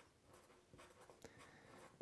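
Felt-tip marker writing a word, heard as faint, short scratches of the tip across the surface, several strokes over the two seconds.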